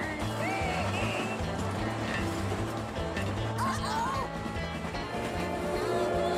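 A cartoon mule's voiced braying, in a couple of short rising-and-falling calls, over steady background music.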